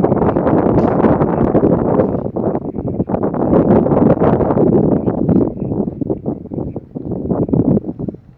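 Wind buffeting the camera's microphone: a loud, fluttering rumble of gusts that drops away sharply at the very end.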